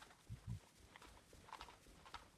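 Faint footsteps on carpet: two soft low thumps about half a second in, then a few light scuffs.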